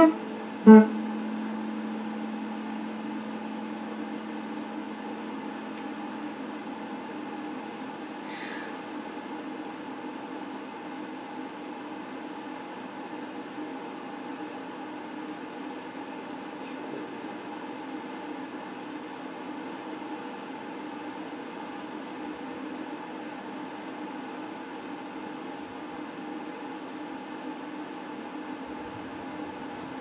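Electric guitar: a few picked notes in the first second, then a held chord that rings on steadily and evenly for the rest of the time.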